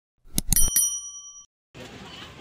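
Subscribe-button sound effect in a channel logo intro: three quick clicks, then a bright bell ding that rings for about a second and fades. Faint outdoor crowd ambience comes in near the end.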